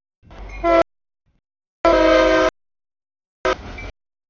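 A CSX freight locomotive's air horn blowing for a grade crossing, heard as three short chord blasts cut off abruptly with silent gaps between; the middle blast is the longest and loudest, and the first rises out of a rumble before the horn chord comes in.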